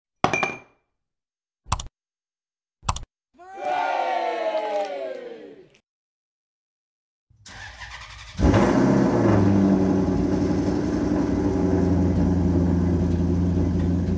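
Ford Focus engine being started, firing up a second after the starter begins and settling into a steady idle. Before it, three sharp clicks and a short falling pitched sweep.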